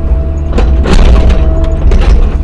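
Cat 305 E2 mini excavator's diesel engine running steadily under a thin steady whine, with a run of knocks and crunching as the bucket works the dirt, starting about half a second in.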